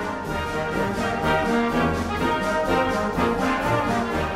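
High-school marching band playing, with brass and saxophones holding full chords.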